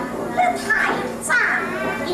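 High-pitched voices in Teochew opera stage dialogue, the pitch gliding up and down in the stylized operatic manner.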